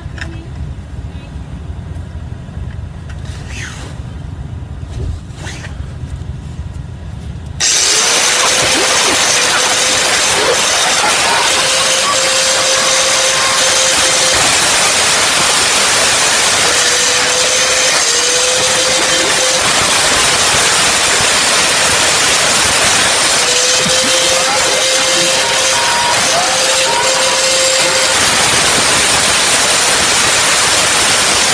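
A handheld cut-off grinder starts about seven and a half seconds in and cuts steadily into a seized steel inner tie rod jam nut. It makes a loud, hissing grind, and its whine sags and recovers several times as the wheel bites. Before that there is only a quieter low rumble with a few clicks.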